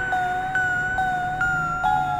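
Background electronic music: held synth tones with soft notes changing every half second or so.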